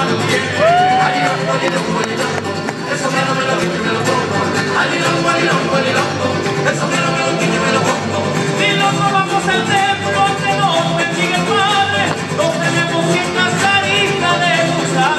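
Mariachi ensemble playing live with a row of violins over strummed guitars and harp, a steady rhythmic bass pulse underneath. An instrumental passage with no singing.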